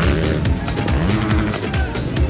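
Dirt bike engines revving up and down as motocross bikes ride the dirt track, with music playing at the same time.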